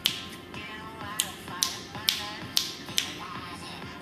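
Finger snaps: about six sharp snaps, most of them roughly half a second apart, over a dance music mix playing in the room.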